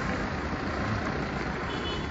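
Steady rushing noise of road traffic going by on a nearby street.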